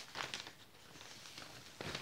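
Paper inner sleeve of a vinyl record rustling as the disc and sleeve are handled, with a few short rustles in the first half second and softer handling noise after.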